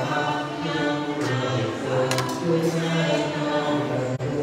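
Group of voices chanting together in unison, long held notes sliding slowly from one pitch to the next, in the manner of Buddhist monastic chanting. A couple of short, light clicks come through about a second and two seconds in.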